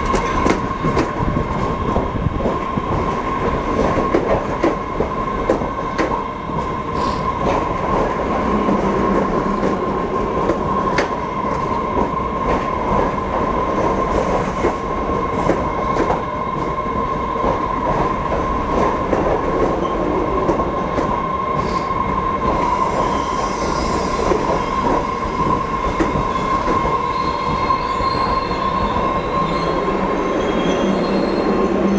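MBTA Red Line subway train rolling slowly into and along a station platform. Its wheels and running gear rumble and click over the track under a steady high-pitched squeal.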